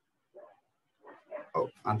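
A moment of silence, then a voice starting to speak: a short sound about a third of a second in, then syllables picking up after about a second.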